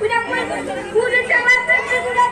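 Speech: a boy speaking comic stage dialogue through a hanging-microphone PA, with crowd chatter and steady held tones underneath.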